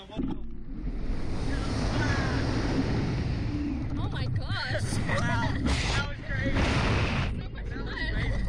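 Wind rushing over the microphone of a camera mounted on a Slingshot reverse-bungee ride capsule as it is launched into the air, starting suddenly just after the start. The riders' voices yell and laugh over it, loudest between about four and seven seconds in.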